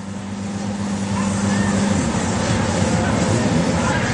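Off-road vehicle engine running hard as it pushes through the mud pit. It holds a steady drone for about two seconds, then turns rougher and noisier as the vehicle bogs down in the mud.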